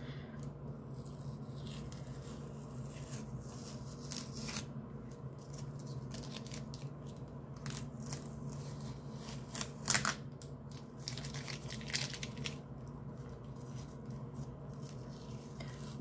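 Tape being peeled off paper and board in a series of short rips, the loudest about ten seconds in, over a steady low hum.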